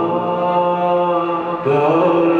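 Live drone music: a loud, sustained wash of held, layered tones that shifts to a new chord about one and a half seconds in.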